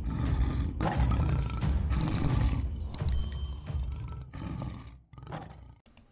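Intro sound effect of a lion roaring over music, with a brief high sparkling chime about three seconds in; the sound fades away over the last couple of seconds.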